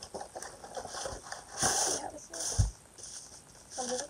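Plastic packaging being handled and unwrapped, crinkling and rustling in short bursts, the loudest about one and a half seconds in, with a soft thud shortly after two and a half seconds.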